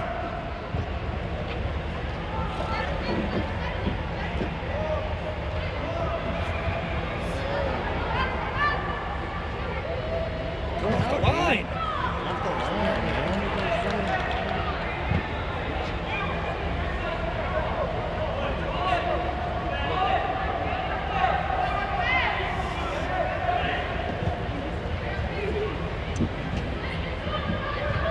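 Players and spectators calling out and talking across a youth soccer game inside an air-supported dome, with one louder shout about eleven seconds in. A steady low hum runs beneath the voices.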